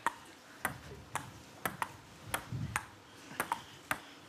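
Table tennis rally: the celluloid ball clicking off the bats and the table, about two hits a second in a steady back-and-forth.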